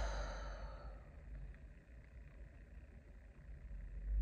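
A woman's sigh: a breathy exhale that tails off about a second in, then quiet room tone with a faint low hum.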